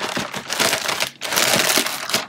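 Crinkly wrapping being handled, a dense crackling rustle with two brief lulls, as breaded chicken fillets are laid out on a foil-lined tray.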